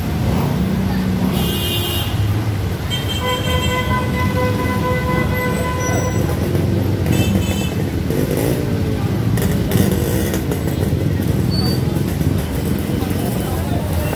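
Busy street noise of traffic and crowd voices, with a vehicle horn held steadily for about three seconds a few seconds in. Shorter high toots come shortly before and after it.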